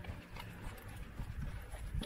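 Footsteps on a paved footpath, a run of soft irregular steps over faint street ambience.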